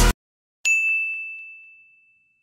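Dance music cuts off abruptly, then a single high bell-like ding rings out about half a second later and fades away over about a second.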